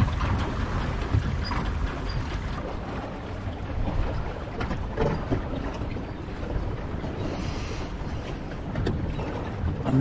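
Water washing along the hull of a small wooden sailing dinghy under way, with wind buffeting the microphone in a steady low rumble.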